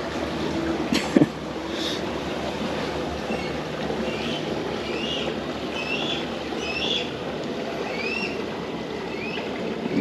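Steady rumble of a small motorboat running past on calm water, with a couple of sharp clicks about a second in. Short, high, rising chirps come about once a second through the second half.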